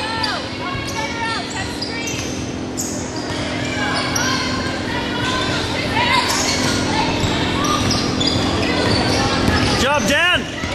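Basketball game sounds on a hardwood gym floor: sneakers squeaking in short bursts and a ball bouncing, with voices calling out in the echoing gym. A loud run of squeaks comes near the end, over a steady low hum.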